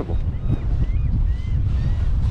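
Wind buffeting the microphone in a heavy, uneven low rumble, over choppy water around a kayak.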